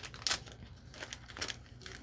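Plastic and paper packaging crinkling and rustling in the hands, in faint, scattered crinkles and small taps as a carded package is handled and set down on a cutting mat.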